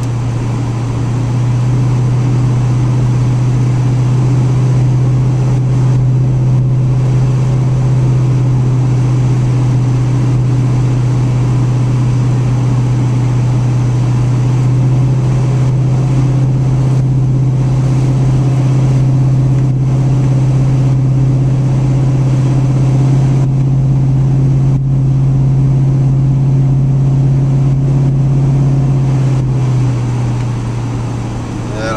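A car cruising at a steady highway speed, heard from inside the cabin: a steady, loud, low engine drone with road and tyre noise.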